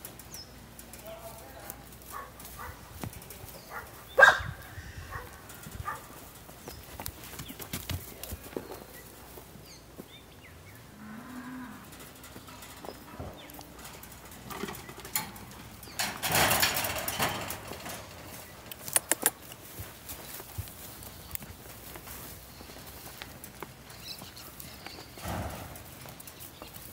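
Donkeys in a straw-bedded pen: scattered knocks and rustling, a faint low call about halfway through, and a harsh, noisy burst lasting about two seconds some sixteen seconds in.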